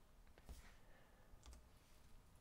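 Near silence with two faint clicks, about half a second and a second and a half in, from a key or mouse button advancing the presentation slide.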